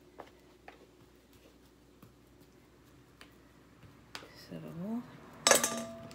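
A few faint ticks and scrapes, then about a second before the end a sudden loud metallic clang with a brief ring, as an aluminium sheet pan is knocked or set down.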